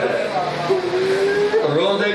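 A man's voice in melodic, chanted recitation into a microphone, holding one drawn-out note for almost a second midway.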